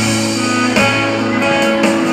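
Instrumental music: a saxophone playing held melody notes over a guitar accompaniment.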